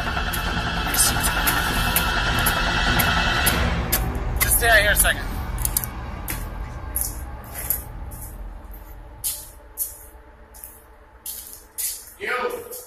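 A steady droning hum with several held tones for the first few seconds, then footsteps on a debris-covered floor, about two steps a second.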